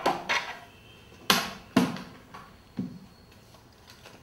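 Hard plastic cutting pads of a manual die-cutting machine clacking and knocking as they are taken out of the machine and handled: five short knocks, the loudest a little over a second in.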